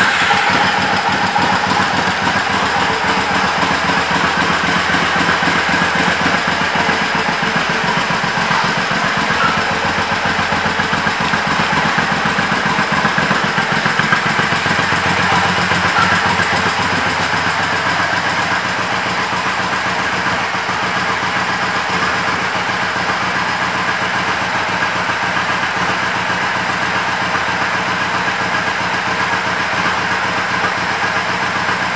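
Triumph America's air-cooled 865 cc parallel-twin engine idling steadily just after being started, a little quieter in the second half.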